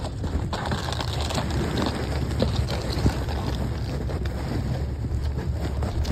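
Handling noise on a phone's microphone: muffled rubbing and a steady low rumble, with a few faint clicks.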